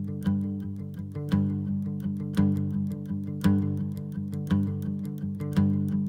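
Instrumental intro of a guitar-led song: strummed guitar over held bass notes, with a strong strum about once a second and lighter strokes between, before any singing.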